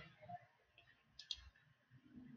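Near silence broken by a faint double click of a computer mouse a little over a second in, opening a downloaded file.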